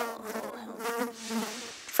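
Buzzing fly sound effect: a steady, slightly wavering buzz.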